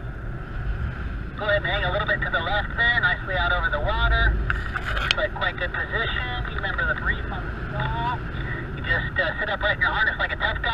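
Wind rushing over the microphone of a camera worn in paragliding flight, a steady low rumble. From about a second and a half in, a voice talks indistinctly over it, with a sharp click about five seconds in.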